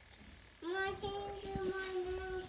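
A child's voice holding one long sung note, sliding up slightly at the start about half a second in and then held steady.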